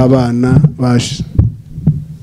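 A man's voice through a microphone drawing out a long, level-pitched call, ending in a hissing 's' about a second in. A few low thumps follow in the second half.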